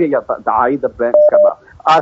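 A man talking steadily.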